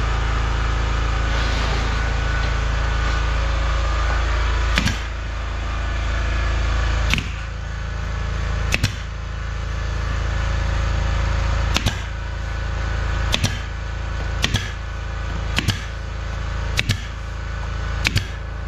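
Pneumatic brad nailer firing nails into wooden trim: about eight sharp shots, one to three seconds apart, starting about five seconds in. Under them a twin-head air compressor runs with a steady hum.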